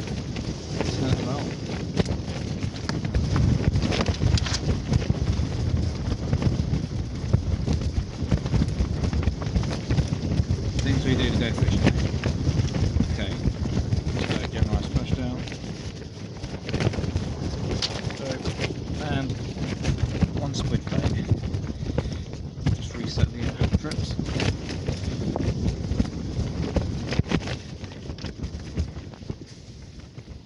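Strong wind buffeting the microphone: a heavy, gusting low rumble with constant crackles and knocks, easing somewhat near the end.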